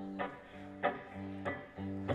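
Guitar quietly strumming three chords about two-thirds of a second apart, each left ringing between strums.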